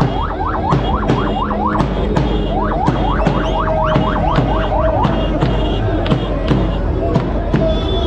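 A bass drum and metal pots being beaten in a steady rhythm of sharp strikes. Over them runs a shrill, siren-like tone that sweeps upward several times a second and holds a steady note for a while near the middle.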